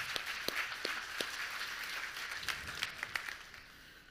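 Congregation applauding: a dense patter of hand claps that thins out and dies away near the end.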